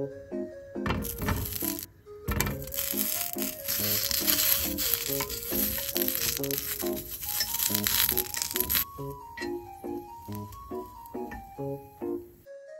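Small octopus-cut wiener sausages sizzling in a hot frying pan, the sizzle starting about a second in, breaking off briefly, then running on until about three seconds before the end. A light background tune with a steady keyboard beat plays over it.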